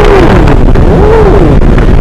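Heavy wind rush on the microphone of a KTM motorcycle ridden at about 80 to 90 km/h, over the running engine. A wavering tone rises and falls about once a second.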